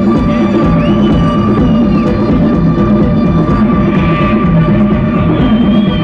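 Electronic dance music from a DJ set played loud over a club sound system: a steady repeating bass beat under a held high tone.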